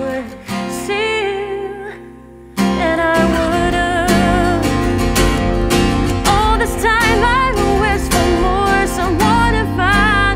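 A song on acoustic guitar with a woman's wordless singing. The music thins out and quietens briefly, then comes back fuller and louder about two and a half seconds in.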